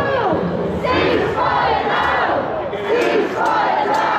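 Crowd of marching protesters chanting and shouting slogans together, many loud voices.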